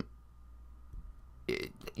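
A man's speech pauses: about a second and a half of quiet room tone with a faint low hum, then a short low vocal sound as his voice starts again near the end.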